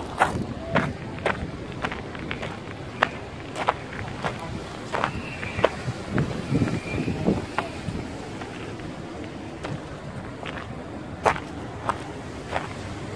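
Footsteps of a person walking on a gravel and stone path, about two steps a second, thinning out in the last few seconds.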